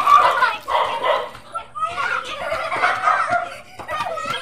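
Excited children's voices calling and shouting in several bursts during a running game.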